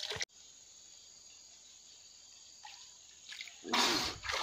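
Audio cuts off abruptly to a faint steady hiss. Near the end comes a short loud burst of water splashing and sloshing from a person moving chest-deep in stream water.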